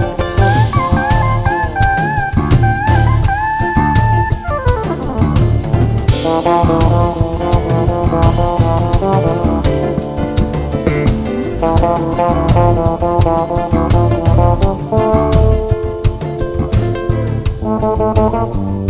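Live band playing an instrumental passage with drum kit and bass keeping a steady beat. Over the first four seconds a lead melody wavers and bends in pitch, ending in a downward slide, then the full band carries on.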